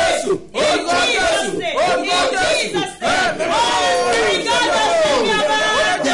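Several voices praying aloud at once, loud and overlapping, in shouted phrases that swoop up and down in pitch.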